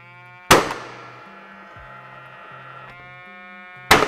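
ICCONS Structnailer gas nailer firing twice, about half a second in and again near the end, driving Super Sharpie nails through a fibre cement weatherboard into a steel frame. Each shot is a sharp crack followed by a long ringing tail.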